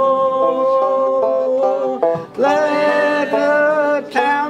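Banjo picked under the slow, long-held sung notes of a folk-song chorus, with a brief break for breath about two seconds in.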